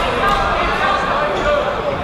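Spectators in a large hall shouting at a boxing bout, with several voices overlapping over general crowd noise and a short knock from the ring about a quarter second in.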